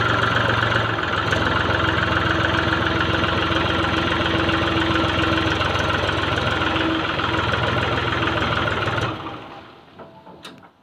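Mahindra 265 DI tractor's three-cylinder diesel engine running steadily, then shut off about nine seconds in, its sound dying away over about a second.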